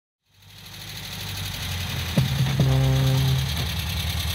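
Opening of a pop song fading in: a steady low pulsing rumble, then, a little over two seconds in, a short falling note followed by a held pitched tone for about a second.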